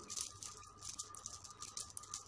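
Faint, irregular crackling clicks over a thin steady tone: low background noise on the recording.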